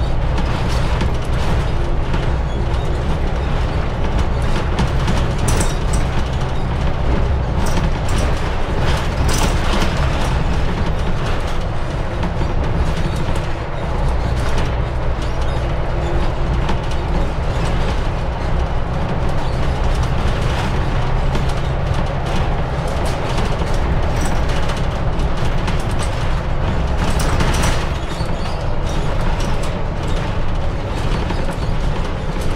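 Mercedes-Benz Citaro city bus underway, heard from inside the cabin: a steady low engine and drivetrain drone with road noise and scattered rattles and knocks.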